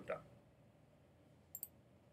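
A single computer mouse click, heard as two quick ticks close together about one and a half seconds in, over faint room tone.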